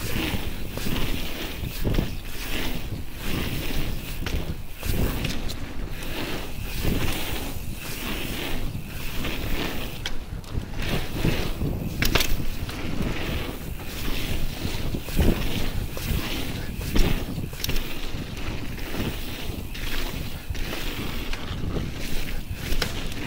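Full-suspension mountain bike riding a slushy pump track: tyres hissing over wet ground, wind buffeting the action camera's microphone in uneven gusts, and scattered knocks and rattles from the bike over the rollers.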